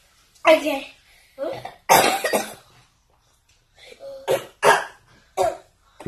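A child coughing in short, separate bursts, about six in all, with a pause of about a second in the middle.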